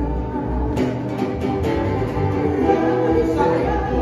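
A live band playing a song: a woman and a man singing together over strummed acoustic guitar, with violin and a few sharp percussion strokes about a second in.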